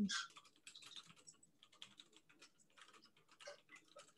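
Computer keyboard typing: a fast, continuous run of faint keystrokes.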